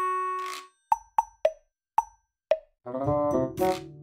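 Playful background music: a held note fades out, then five short, separate plop sounds, then a buzzy multi-note melody comes in near the end.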